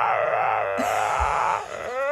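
Husky howling with a wavering, drawn-out 'talking' howl that breaks off shortly before the end, then starts a clearer, steadier howl.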